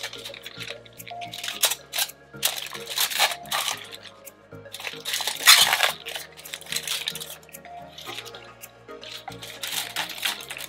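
Aluminium foil crinkling and bok choy leaves rustling in a string of short bursts as hands press and arrange the stalks in a foil-lined baking dish, the longest burst about halfway through. Background music with a steady bass line plays underneath.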